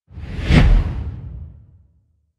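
A single whoosh sound effect with a deep low rumble, accompanying an animated company logo. It swells quickly to a peak about half a second in, then dies away over the next second.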